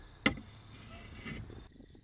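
Faint, steady background noise with one short click about a quarter second in. The sound drops almost to nothing near the end.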